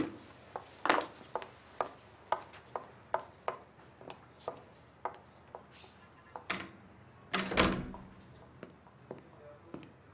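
Footsteps on a hard floor, about two steps a second, fading out after about five seconds. They are followed by an office door shutting, with a heavy thud about seven and a half seconds in.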